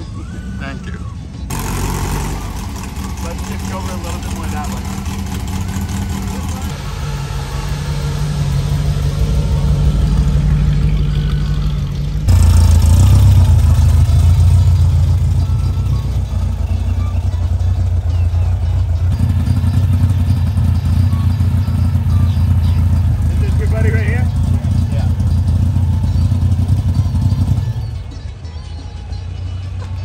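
Air-cooled Volkswagen Beetle flat-four engines running as the cars drive slowly past, heard as a steady low rumble. The sound changes abruptly several times as one car follows another.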